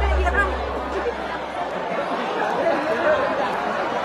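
Many people chatting at once in a large hall, a steady crowd murmur of overlapping voices, as the tail of the band's bass dies away in the first second.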